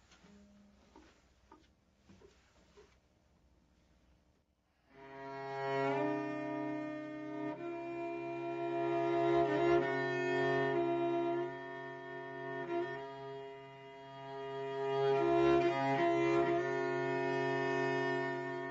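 Solo cello, bowed. After about five seconds of near silence it enters with a held low note that keeps sounding under a slow-moving line of higher notes.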